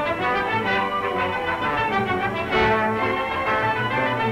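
Orchestral music with brass prominent, held chords that change every second or so.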